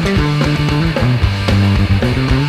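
Punk rock band playing live: distorted electric guitar, bass guitar and a fast, even drumbeat, with the bass line stepping down to a lower note about halfway through.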